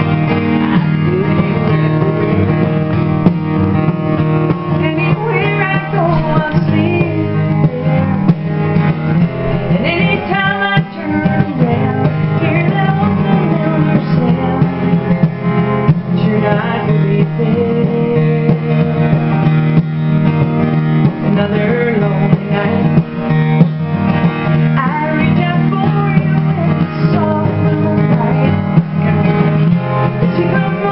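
Steel-string acoustic guitar strummed steadily, with a woman singing over it.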